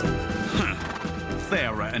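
Background music with a horse whinnying, a wavering call that falls and rises in pitch in the second half.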